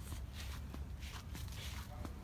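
Footsteps of someone walking while holding the camera, a soft irregular step every few tenths of a second, over a steady low rumble.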